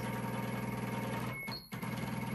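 Happy Japan HCS2 12-needle embroidery machine's hoop drive motors jogging the embroidery frame slowly at the arrow keys: a steady, finely pulsing motor hum that stops briefly about one and a half seconds in as the key is pressed again, then resumes.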